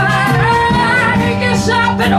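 A live blues band jamming, with a woman's voice carrying a melody that slides and bends in pitch over the band.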